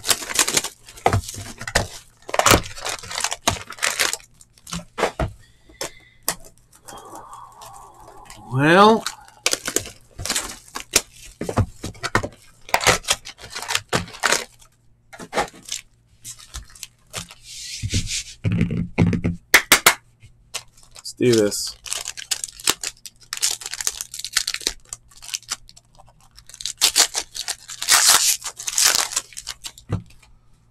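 Trading-card packaging being handled and torn open: crinkling and tearing of wrappers and box packaging, with many sharp clicks and slaps as packs and cards are handled. A longer stretch of ripping and rustling comes near the end.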